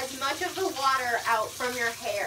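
A woman's voice, talking under her breath, over the steady hiss of tap water running from a bathtub spout into the tub.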